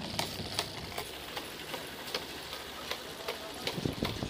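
Scattered light clicks and ticks at uneven intervals over a steady outdoor background hiss.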